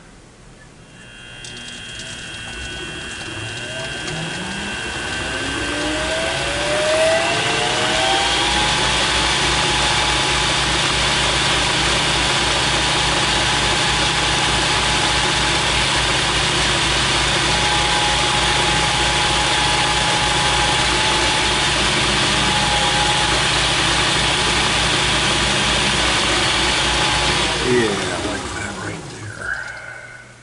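Metal lathe starting up, its motor and spindle rising in pitch over about seven seconds, then running steadily while a chamfer is turned on the workpiece. Near the end it is switched off and the pitch falls as the spindle coasts to a stop.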